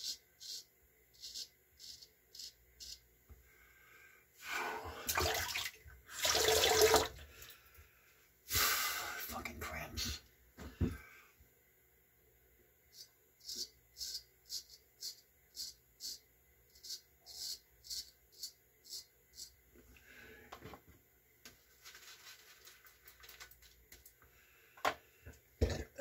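Straight razor scraping through lathered stubble in short strokes, about two a second. In the middle, two louder bursts of running water, several seconds each.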